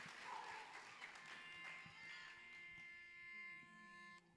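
Faint crowd noise dying away as applause ends, then a faint steady held pitch, one note with several overtones, sustained for about two seconds before it cuts off sharply.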